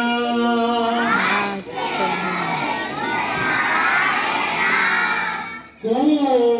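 A single voice holds a sung note for about a second. Then a large group of children sings a bhajan line together, many voices at once, breaking off just before the end.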